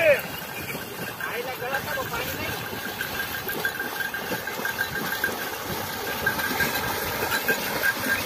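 Two bullocks wading through shallow river water as they pull a wooden cart along the bank, their legs splashing through the water.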